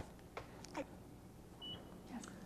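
A short, faint, high electronic beep, one steady tone about one and a half seconds in.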